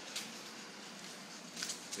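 Steady room noise with no clear source. There is a short click about a quarter second in, and a few brief clicks or rustles near the end.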